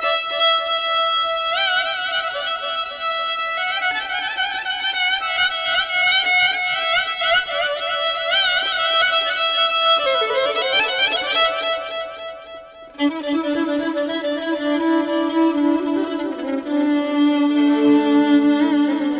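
Solo violin playing Persian classical music in dastgah Shur: a melody with vibrato in the upper register that fades out about twelve seconds in, then a new phrase starting lower, over a held low note.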